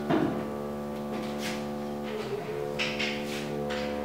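A few short, scratchy strokes of a marker on a whiteboard, heard over a steady hum made of several held tones.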